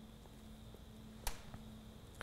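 Near silence: a faint steady hum, with a single sharp click a little past halfway.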